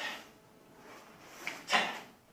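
Karate uniforms snapping and bare feet stepping on foam mats as a group of children performs kata moves in unison: short bursts of rustle and thud about a second apart, the loudest near the end.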